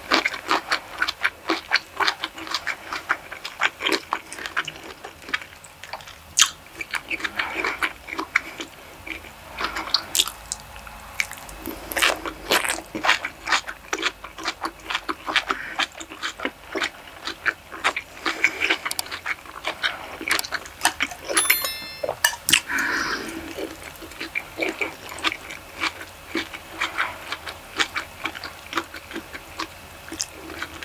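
Close-miked chewing of a mouthful of fried rice, with steady wet smacks and sticky clicks of the mouth and tongue.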